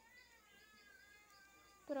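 A faint, thin, wavering cry, like a newborn baby's wail just after a vaccine injection, drifting slowly down in pitch. A woman's soothing voice cuts in right at the end.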